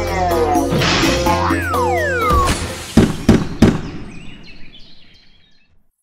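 Cartoon soundtrack music with a low held bass and falling, cartoonish pitch glides, then three loud sharp hits in quick succession about three seconds in. The sound fades out toward the end.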